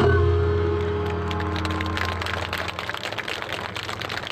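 An ensemble's closing note rings out and fades, and audience applause starts about a second in and grows as the music dies away.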